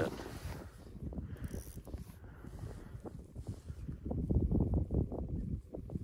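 Gusting wind on the microphone, a ragged low rumble that grows heavier about four seconds in. Under it, a short ice-fishing rod and reel are being worked as a fish is fought through the ice hole.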